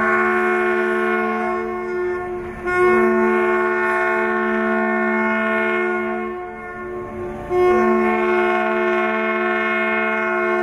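A ship's horn sounds three long, steady blasts at one fixed pitch. The first breaks off about two and a half seconds in, and the third starts about seven and a half seconds in: horns saluting a yacht's launch.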